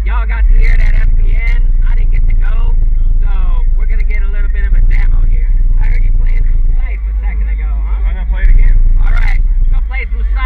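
Four custom Fi BTL subwoofers in a car playing very loud, deep bass notes that step up and down every second or so, with a voice heard over the bass.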